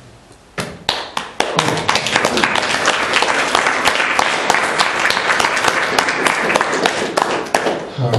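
Audience applauding: a few scattered claps about half a second in build into steady applause within the next second.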